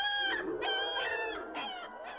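A chicken squawking in four short, slightly falling calls, the last one faint near the end.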